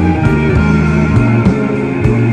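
Live blues-rock trio playing: electric guitar lines over a steady electric bass line and drums keeping a regular beat of a few hits a second.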